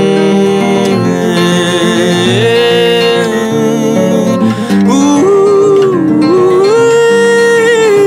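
A man singing long held notes with vibrato over a nylon-string acoustic guitar that he strums and picks, in a slow song.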